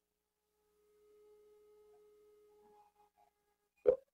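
Near silence on a video-call line, with a faint steady tone through the middle and one brief sound just before the end.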